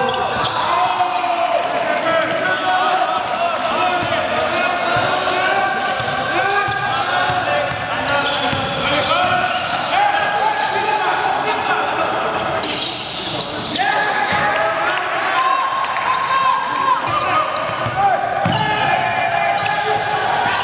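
Live basketball game sound in a large gym: a basketball bouncing on the hardwood court, with players' voices calling out over each other throughout.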